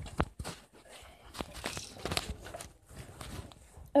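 Handling noise from a phone being moved about in the hand: scattered clicks, knocks and rustling against the microphone.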